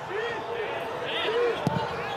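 Pitch-side sound of a football match in a stadium without spectators: faint shouts from players, and a single sharp thud of the ball being kicked about 1.7 seconds in.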